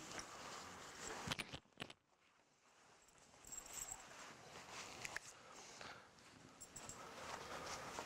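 Faint rustling and shuffling of a skydiving harness-container being lifted and shrugged on, its straps and hardware shifting, with a few sharp clicks about a second and a half in.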